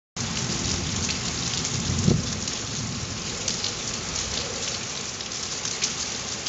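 Steady heavy rain falling on the roof and ground, with a low thunder rumble in the first couple of seconds and a brief low thump about two seconds in.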